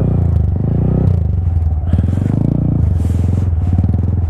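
Honda Grom's small single-cylinder engine revving up and easing off several times as the rider tries to lift a wheelie on a snowy road; the front wheel does not come up.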